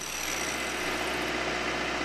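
A steady mechanical hum, like a motor running continuously, with no strikes or changes.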